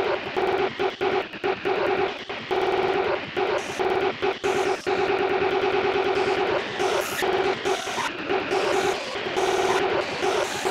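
Sparta-style remix audio: a held, pitched tone chopped into rapid stutters by sharp cuts, with harsh, distorted bursts in between.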